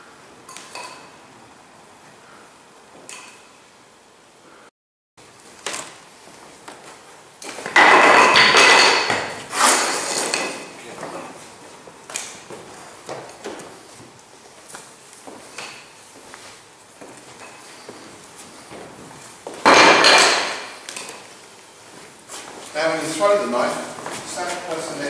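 Wooden training knives being thrown and caught around a circle of people: scattered light taps, and two loud clattering knocks that ring briefly, about eight seconds in and again near twenty seconds.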